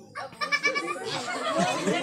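A short high, quavering vocal cry with a rapid bleat-like wobble, lasting about half a second, followed by several voices talking over one another.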